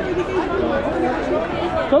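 People talking among a crowd: overlapping chatter of voices in the stands.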